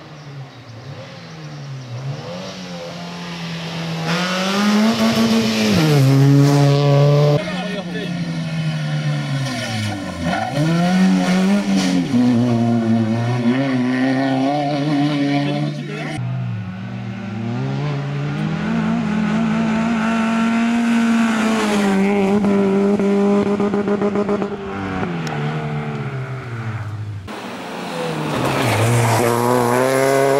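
Peugeot 206 rally car engine at full stage pace, revving hard, its pitch climbing and dropping again and again through gear changes and lifts off the throttle. It starts faint and grows loud as the car approaches, and is heard from several spots along the stage in turn.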